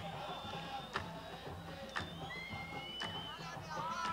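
Faint stadium background from a match broadcast: a sharp beat about once a second over a low rhythmic sound, with a few brief high whistle-like tones in the second half.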